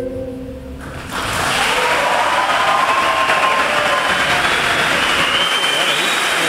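The last held note of a sung song fades in the first second, then a large audience breaks into steady applause with voices over it.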